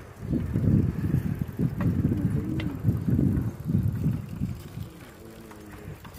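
Wind buffeting the microphone on a moving bicycle, a low rumble that rises and falls in gusts, over the faint sound of the bike riding along a concrete road.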